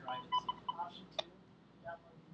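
Morse code beacon from an Arduino HamShield FM transmitter, heard as short and long steady beeps through a small ICOM handheld radio's speaker; the code ends a little under a second in, followed by a single click.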